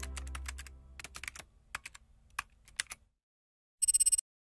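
Keyboard-typing sound effect: a run of irregular key clicks over about three seconds as the logo's tagline types out letter by letter, over the fading low tail of a musical swell. Near the end a fast, even run of bright electronic clicks begins.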